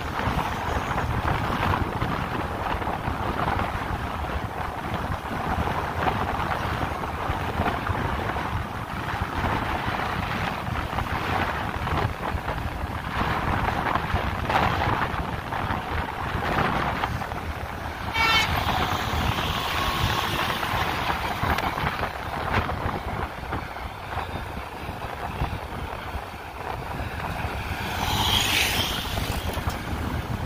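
Steady wind rush and road and engine noise from riding along a busy road. A vehicle horn sounds briefly about 18 seconds in, and another sharper sound comes near the end.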